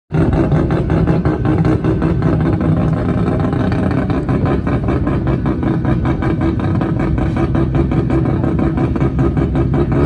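Mazda rotary engine running steadily, its exhaust giving a rapid, choppy, evenly pulsing note at a constant engine speed.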